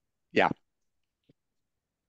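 A single short spoken 'yeah', then near silence.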